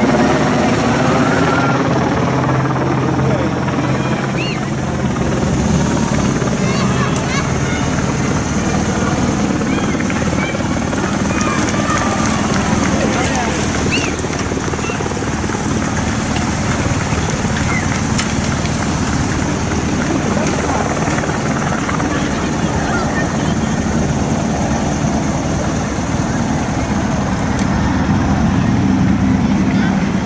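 Roadside sound at a pro bike race: a motorcycle's engine passes close in the first few seconds, over a steady low engine drone and spectators' voices.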